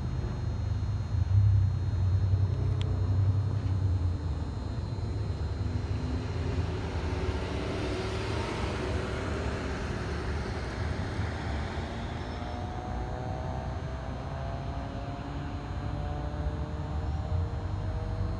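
Vehicle noise: a steady low engine rumble, with a passing vehicle swelling and fading in the middle, its engine tones sliding in pitch.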